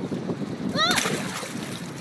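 Water splashing sharply beside a drift boat about a second in, as a hand-held brown trout goes back into the river, with a wash of moving water after it.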